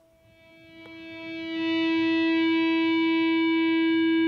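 Electric guitar natural harmonic swelled in with a volume pedal and run through delay. The note rises from silence over about a second and a half, then holds steady as a long, feedback-like sustained tone.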